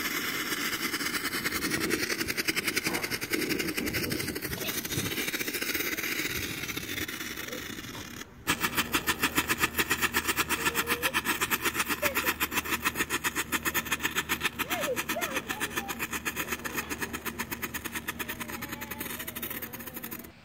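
A smoke bomb hissing steadily. About eight seconds in, a strobe-type 'lightning flash' firework starts popping in a fast, even rhythm of sharp cracks that keeps going to near the end.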